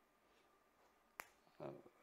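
Near silence, broken once a little past halfway by a single short, sharp click.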